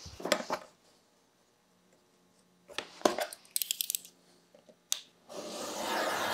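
A craft knife cutting through a card file folder along a steel ruler on a cutting mat: a few clicks and knocks of the ruler and blade, then a quick run of scratchy ticks as the blade draws through the card, and a rustle of card near the end.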